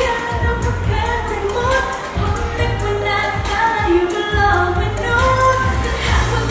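A girl singing a pop song into a handheld microphone over a backing track with a strong, pulsing bass beat.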